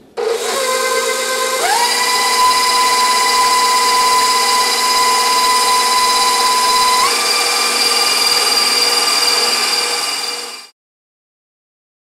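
KitchenAid stand mixer with a wire whisk whipping cream-cheese whipped-cream frosting toward stiff peaks: the motor whine starts low, steps up to a higher speed about one and a half seconds in, steps up again about seven seconds in, and then stops suddenly near the end.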